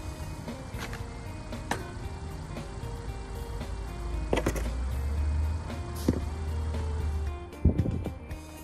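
Background music with a steady melody, a deep drone for a few seconds past the middle, and a few sharp knocks and scrapes of a snow shovel working packed snow.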